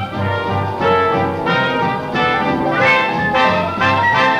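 Orchestral film music carried by brass, with trumpets and trombones playing chords and moving lines.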